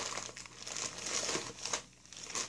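Plastic packets of modelling clay crinkling as they are rummaged through and picked up by hand, a run of short, irregular rustles.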